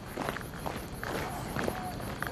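Footsteps of a group of soldiers walking off together on a dirt path, with the rustle of their gear.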